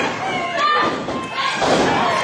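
Wrestlers hitting the ring mat with one heavy thud about one and a half seconds in, over voices calling out.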